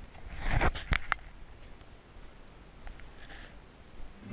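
Footsteps on a rocky cave floor: a loud scrape about half a second in, then two sharp knocks, then a few faint scuffs and ticks.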